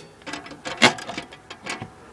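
Small metal clicks and rattles from a window's metal prop rod and its fitting being handled and set, the sharpest click a little under a second in and a few lighter ones near the end.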